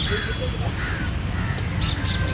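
A crow cawing twice, each call falling in pitch, over a steady low rumble of outdoor background noise.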